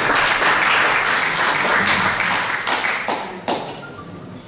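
Audience applauding, many hands clapping together, then dying away about three and a half seconds in.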